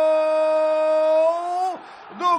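A football commentator's long drawn-out goal shout, 'gooool', held as one high, steady note that lifts slightly and breaks off near the end.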